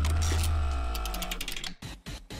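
A news-bulletin transition sound effect: a deep bass hit with a ringing tone, and a run of rapid mechanical clicks in the middle, all fading out before the end.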